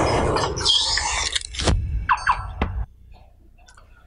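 Mechanical sound effects of a vehicle folding itself up, played from a short video over loudspeakers. A loud clattering, whirring noise leads into a falling squeal, a few sharp knocks and short rising whines, and the sound cuts off suddenly about three seconds in.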